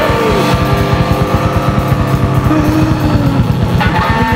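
Loud rock music with a rapid, even low pulsing of about eight beats a second under held distorted tones, and a falling slide near the start.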